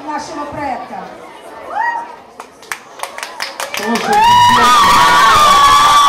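Room chatter, a few sharp taps, then about four seconds in a young female singer's voice rises into one long, loud, high held note that wavers slightly.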